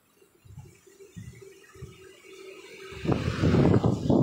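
Wind gusting onto the microphone: a few faint low thumps, then loud low buffeting breaking in suddenly about three seconds in, during a storm at the seafront.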